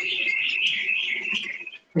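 A bird calling in one continuous, high, wavering chatter lasting about two seconds.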